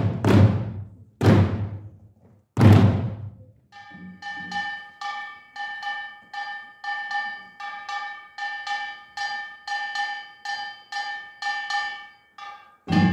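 An utdari samulnori percussion ensemble plays a few heavy unison strikes with long ringing decays. From about four seconds in it settles into a steady run of lighter strokes, about three a second, over a sustained ringing pitch.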